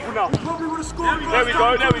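Football thudding twice on an artificial-grass pitch, two sharp hits about a third of a second in and near the end, with men's voices calling over it.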